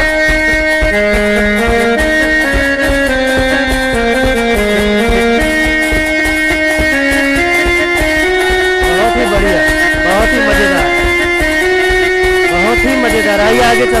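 Live Indian folk music: a melody of held notes on a harmonium-toned keyboard over a steady beat on large nagara drums. Men's voices sing along in the second half.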